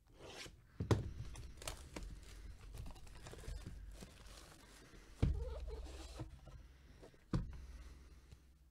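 Plastic shrink-wrap being torn and pulled off a cardboard card box, crinkling, with several sharp knocks as the box is handled; the loudest knock comes about five seconds in.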